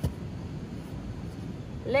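A plastic sand bucket packed with wet sand is flipped over and set down on the sand with a brief dull thump at the very start. Steady beach background noise follows.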